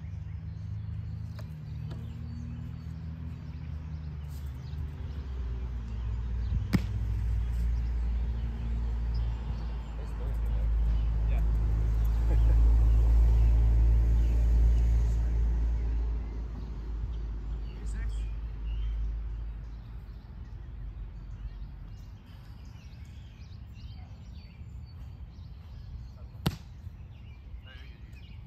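Outdoor background noise dominated by a low rumble that swells about ten seconds in and fades away by about twenty seconds, with one sharp knock around seven seconds in.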